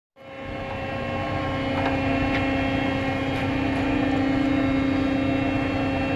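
Ship's deck machinery running steadily: a constant low hum with a clear drone, over a low rumble.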